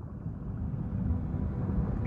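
A low rumbling noise swelling up gradually, with faint held tones starting to sound through it: the ambient sound-effect opening of a folk-metal track's intro, just before the music proper comes in.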